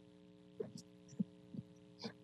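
Steady low electrical hum in a pause between speech, with four or five faint short soft sounds spaced about half a second apart.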